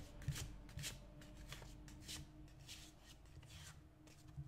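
A tarot deck being shuffled by hand: a run of soft, irregular swishes of cards sliding over one another, fewer near the end.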